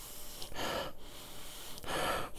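A man sniffing a glass of beer with his nose in the glass: two long inhales through the nose, one starting about half a second in and another near the end.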